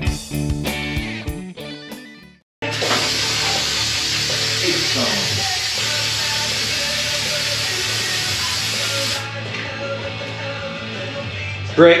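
Rock music with guitar fades out over the first couple of seconds. Then an aerosol can of brake cleaner sprays in one long steady hiss for about six seconds and stops abruptly.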